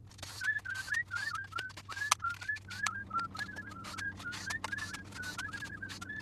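Many small sharp clicks and rattles of plastic connectors and circuit boards being handled and unplugged inside a robot vacuum cleaner's chassis. A repeated short high chirp, several times a second, runs alongside, over a low steady hum.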